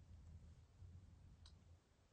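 Near silence: faint room tone with one faint click about one and a half seconds in.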